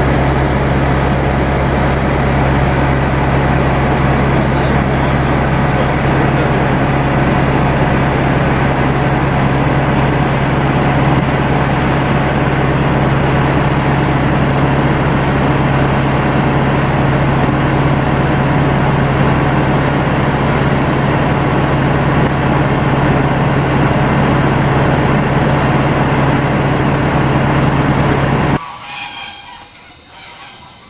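Loud, steady engine and cabin noise of a light aircraft in flight, a low drone with a steady hum. It cuts off abruptly near the end.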